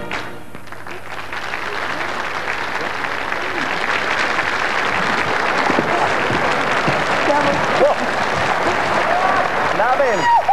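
Large audience applauding, the clapping swelling steadily, with a few voices calling out in the last few seconds.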